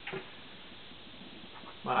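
Quiet steady room hiss with one brief, short sound just after the start, then a man's voice starting to speak near the end.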